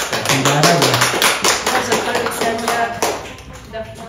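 A few people clapping in irregular, overlapping claps, with voices over the applause; the clapping dies away about three seconds in.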